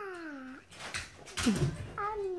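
A small dog making a short low vocal sound, falling in pitch, about a second and a half in, with a few soft knocks around it.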